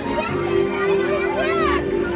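Parade music with a long held note, mixed with crowd chatter and a child's high voice calling out near the end.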